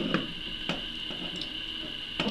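A few light clicks of small metal parts as a digital caliper's thumb roller and slider are handled and fitted back into the groove on the beam, over a faint steady high-pitched tone.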